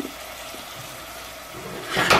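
Quinoa grains toasting in a little vegetable oil in a stainless steel pot over a gas flame, a steady soft sizzle. It grows louder at the very end as the pot is moved on the burner grate.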